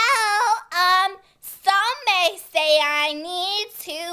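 A girl singing in a high voice without clear words: several short phrases, then a longer held, wavering note in the second half.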